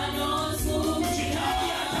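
Live gospel praise-and-worship singing by a group of singers on microphones, male and female voices together in harmony, over a steady low accompaniment.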